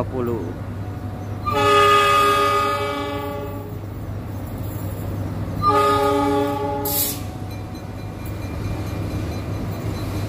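Diesel locomotive horn: one long blast of about two seconds, then a shorter blast a few seconds later, sounded by an oncoming train passing through the station, with a brief hiss just after the second blast. A steady low engine hum runs underneath.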